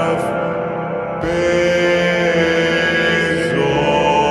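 Chant-like music of held, wordless tones from an isolated vocal track, sustained in steady chords that shift to new pitches about a second in and again near the end.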